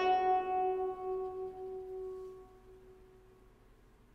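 The last plucked chord of a folk-instrument piece, played on a four-string lute, ringing out and fading away over about three seconds until almost nothing is left.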